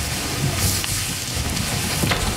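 People moving about: a steady rustling and shuffling noise with irregular low thumps.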